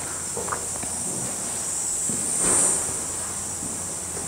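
Steady high-pitched insect chirring, swelling briefly about halfway through, with a few soft footsteps on a bare floor.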